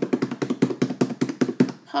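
A drum roll tapped out by hand on a tabletop: a rapid, even run of taps, about ten a second, that stops shortly before the end.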